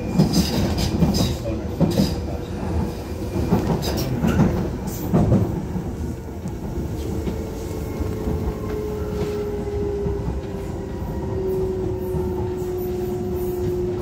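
Docklands Light Railway train running on its track. For about the first five seconds there is a quick run of clacks and knocks from the wheels over rail joints and points. After that a steady motor whine slowly falls in pitch as the train slows.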